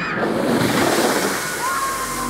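A loud, even rush of water as thousands of litres are pumped into a splash coaster's emptied splash basin within seconds, throwing up a hissing spray; a short gliding tone sounds over it near the end.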